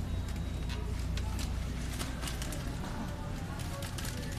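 Supermarket ambience with a wire shopping cart rolling: light clicks and rattles over a steady low hum, with faint voices in the background.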